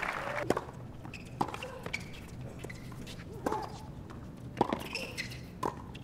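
Tennis rally on a hard court: sharp pops of racquet strings hitting the ball, about one a second, with lighter ball bounces between.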